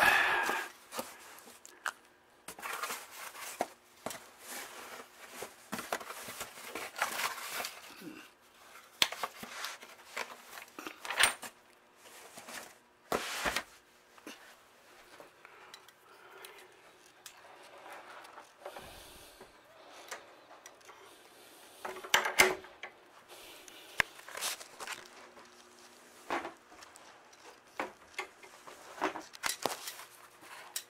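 Rummaging through plastic storage drawers and cardboard boxes: scattered clicks, knocks, rustling and light clinks of items being moved and handled, with a louder cluster of knocks a little past the middle.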